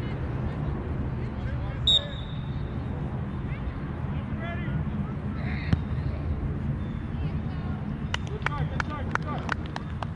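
Soccer-field ambience: distant shouts and chatter of players and spectators over a steady low rumble. About two seconds in there is one short, high referee's whistle blast, the loudest sound, and a little past halfway a single sharp knock, like a ball being kicked.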